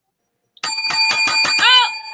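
A small bell rung in a rapid trill of sharp strikes, its ringing tones held steady, starting a little over half a second in after a moment of silence. A voice says "Oh" near the end.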